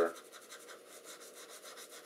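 A Conté à Paris sketching crayon stick rubbing and scratching across drawing paper in short, repeated strokes, faint.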